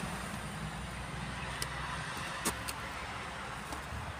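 Low, steady mechanical rumble from a Konstal 805Na tram standing close by, its deepest part dropping away about halfway through, with a few sharp clicks over it.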